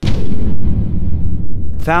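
A sudden, loud, deep boom that rumbles on and slowly fades over about two seconds, a cinematic boom effect laid on the cut from black. Narration begins near the end.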